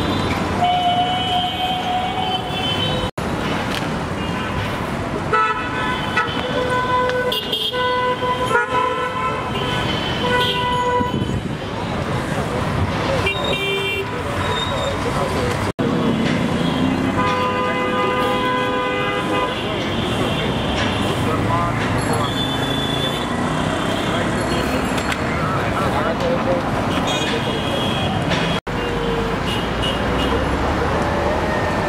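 Dense city traffic with car and bus horns honking again and again, often several at once and some held for a second or more, over the steady noise of passing vehicles.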